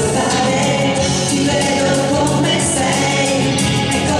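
A woman singing a ballad into a handheld microphone over full backing music.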